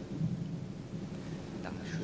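Low rumble and a click from a handheld microphone being handled as it is passed to an audience member, over the hall's room tone.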